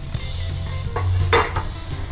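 A steel spatula works a cooked paratha off an iron tawa and onto a steel plate: metal-on-metal scraping and handling, with one sharp metallic clink about a second and a half in.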